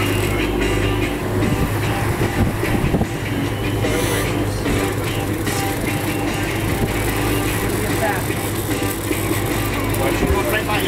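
Music from a radio playing on board, over a boat engine's steady low hum.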